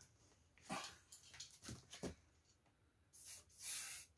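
A few light knocks and clicks of handling, then two short hissing bursts from an aerosol spray-paint can near the end.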